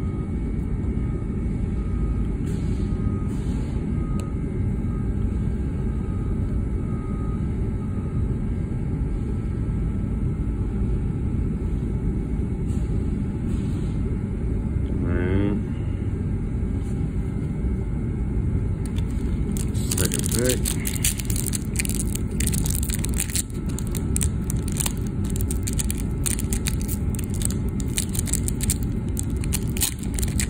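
A foil trading-card pack wrapper crinkling and crackling as it is handled and torn open, starting about two-thirds of the way through, over a steady low rumble.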